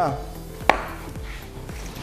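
A drinking glass set down on a countertop: a single sharp knock about two-thirds of a second in.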